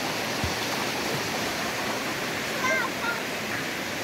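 Steady rushing of a flowing river. A voice is heard faintly and briefly about three quarters of the way through.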